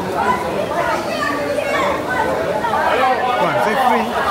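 Crowd chatter: many people talking at once in overlapping voices, with no single speaker standing out, at a steady level.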